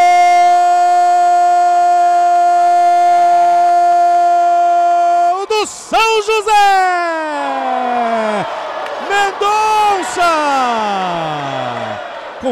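Football commentator's drawn-out shouted "gol" goal call, one vowel held at a steady pitch for about five seconds. It then breaks into shorter shouted phrases that slide down in pitch.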